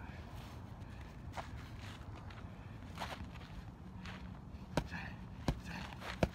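Strikes landing on held striking pads: a few sharp slaps spaced out, faint at first and sharper near the end, with shuffling footwork on grass between them.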